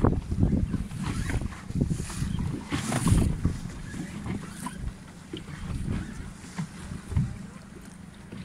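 Wind buffeting the microphone in irregular gusts over the splash and slap of choppy water, heard from a small boat. It is heaviest in the first half and eases off after about five seconds.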